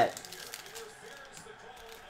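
Faint, quiet handling noise of trading-card packs and cards on a table, with a few small crackles of the wrappers, over low room tone.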